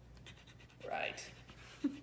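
A dog panting quietly, with a brief voice-like sound about a second in and another short one near the end.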